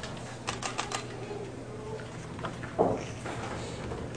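A quick run of about five sharp clicks about half a second in, then a few fainter ones, over a steady low hum. A brief voice sound comes near the end.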